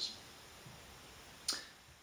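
Quiet room tone in a pause between speech, with a single short, sharp click about one and a half seconds in.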